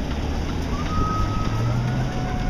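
Street traffic: a steady low vehicle rumble, with a thin high whine that comes in before halfway and rises slightly in pitch.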